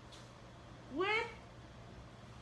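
A single short vocal sound from a person, rising in pitch and then holding briefly, about a second in, over quiet room tone.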